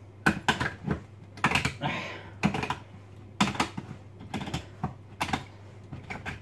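Hand-held tin opener being turned around the rim of a tin near the end of the cut: a run of short, irregularly spaced clicks.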